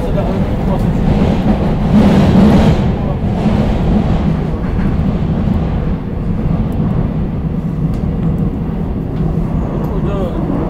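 Seoul Metro Line 5 subway train running between stations, heard from inside the car: a steady rumble of wheels and traction motors, swelling briefly about two seconds in.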